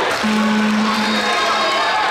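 A single steady low tone, about a second long, over continuous crowd chatter and shouting in the arena.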